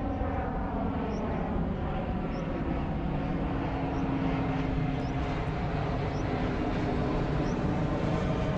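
Jet airliner flying overhead: a steady engine roar with a whine whose pitch slowly falls as the plane passes.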